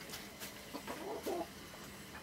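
A domestic hen clucking faintly, a few short calls about a second in.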